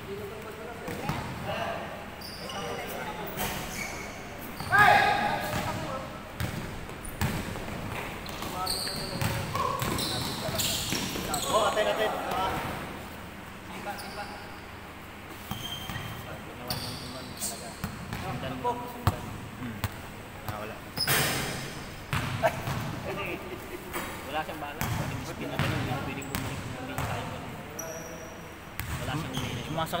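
Basketball bouncing and knocking on an indoor court during play, with players calling out and a louder shout about five seconds in.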